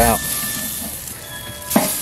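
T-bone steak sizzling on a charcoal grill grate, a steady hiss, with one short sharp click of the metal tongs near the end as the steak is flipped.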